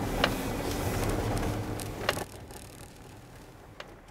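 Car on the move heard from inside the cabin: a steady low engine and road rumble with a couple of sharp clicks, dropping away abruptly a little after two seconds in.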